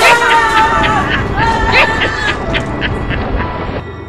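People screaming and yelling in fright, in strained, raspy cries that rise and fall in pitch. The screams cut off suddenly near the end.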